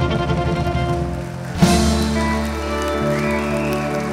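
Live western swing band playing an instrumental passage with no singing: held chords over drums, with a sudden louder accent and a new chord about one and a half seconds in.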